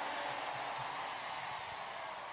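A steady hiss of noise without a clear pitch, fading slightly across the pause.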